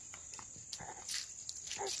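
A toddler's bare feet scuffing on sandy ground in scattered short steps, over a steady high-pitched drone, with a brief child's vocal sound near the end.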